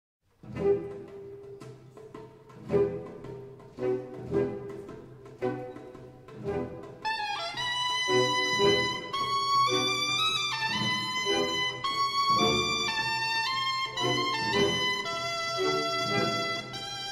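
Symphonic wind band playing: the music opens with spaced percussion strikes over a low held tone, and about seven seconds in the brass and woodwinds enter with sustained chords, with the percussion accents going on beneath them.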